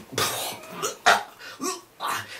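A person coughing a few times in short, rough bursts, interrupting speech.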